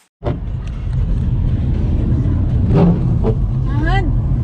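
Steady road and engine noise inside the cabin of a moving car, starting abruptly just after the start. A voice is heard briefly near the end.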